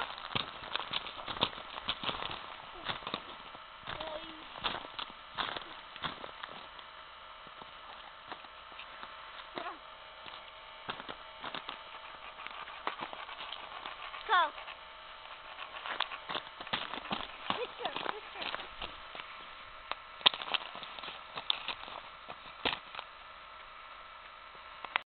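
Irregular crunches and clicks of snow under children's boots and being packed in gloved hands, with brief bits of children's voices, including an 'Oh' partway through.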